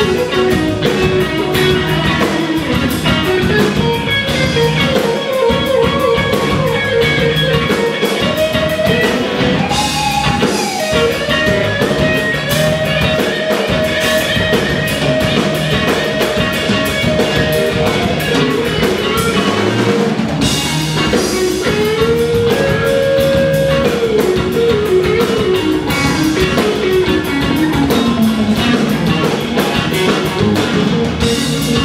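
Live blues-rock band playing an instrumental passage: an electric guitar lead with long held notes that bend in pitch, over a drum kit.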